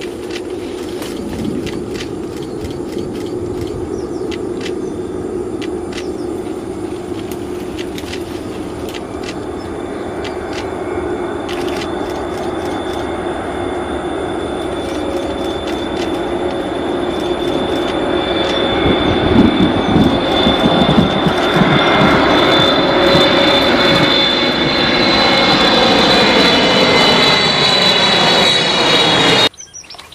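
A steady engine drone that grows louder over about twenty seconds, its tones sliding down in pitch near the end, then cuts off abruptly.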